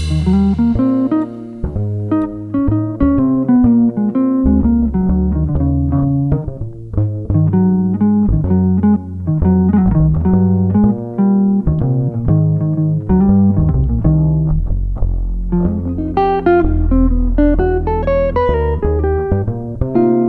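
Jazz guitar playing a single-note melodic line over plucked double bass, with drums backing them.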